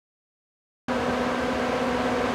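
Dead silence for nearly a second, then a steady hum with a constant low tone starts abruptly and runs on evenly.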